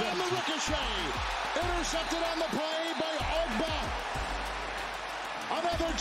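Stadium crowd cheering an interception, heard through the TV broadcast: many overlapping shouting voices over a steady crowd roar.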